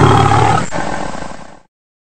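A loud roaring sound effect over the intro logo, fading out and ending about one and a half seconds in.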